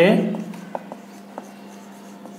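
Marker pen writing on a whiteboard: a few brief strokes and ticks over a steady low hum.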